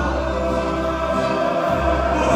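Mariachi singers holding a sung chord together in chorus, with a deep bass note sustained beneath it that breaks off briefly near the end and returns.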